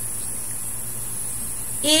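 Steady low electrical hum with a constant high hiss, and no distinct event. A woman's voice starts a word at the very end.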